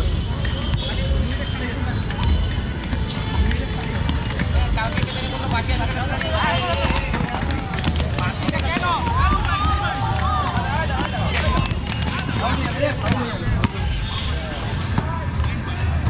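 Voices of players calling and shouting across an outdoor court during a roller ball game, over a steady low rumble.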